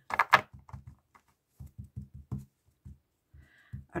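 A deck of tarot cards being shuffled and cut by hand: a brief burst of card noise at the start, then a quick run of soft taps and slaps.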